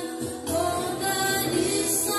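A group of girls singing a slow song together into microphones, with long held notes.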